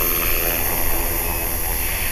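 Electric HK-450 RC helicopter (T-Rex 450 clone) sitting on the ground with its rotor still spinning, a steady whirr of blades and brushless motor with a high whine, and wind rumbling on the microphone.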